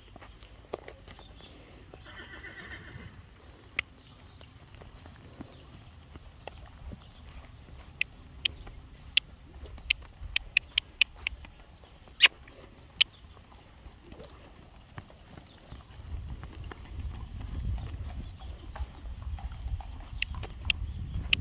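A horse moving around a sand arena, its hoofbeats heard as a rhythmic clip-clop. A run of sharp clicks comes in the middle, and a low rumble builds near the end.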